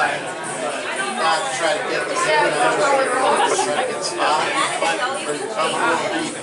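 Chatter: several voices talking over one another, with no single clear speaker.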